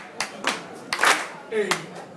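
Audience hand clapping in rhythm, clapping along to the beat, with sharp claps about half a second apart.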